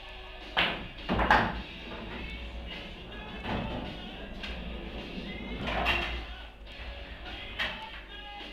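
Pool balls knocking as a shot is played and a yellow ball goes into the pocket: a sharp strike about half a second in, then the loudest knocks a second in, with a few softer knocks later, over background rock music.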